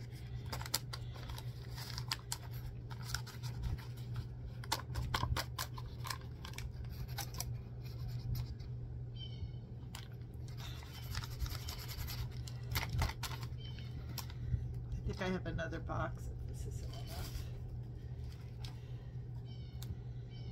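Paper bag crinkling and being tapped as cornstarch is shaken out of it into a tin can, a dense run of small crackles and taps through the first half, sparser later.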